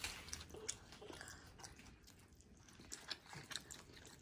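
Quiet chewing and biting of thin-crust pizza, with scattered small crunches and mouth clicks.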